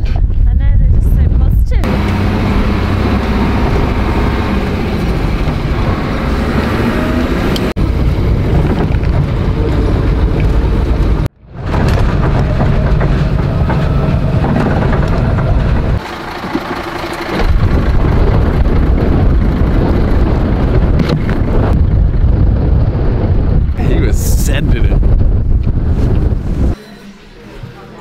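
Heavy wind buffeting the microphone. After a sudden cut about 11 s in, a steady engine and road drone inside a moving coach bus follows. The noise drops away sharply near the end.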